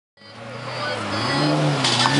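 Lamborghini Murcielago LP640's V12 engine idling, fading in from silence, with a light blip of revs about a second and a half in.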